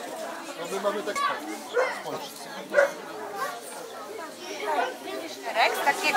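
Indistinct chatter of many voices in a room, children's voices among them.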